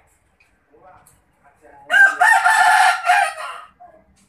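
A rooster crowing once, a loud drawn-out call of nearly two seconds starting about halfway through.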